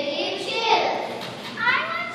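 Young children's voices speaking, high-pitched, with a rising call near the end.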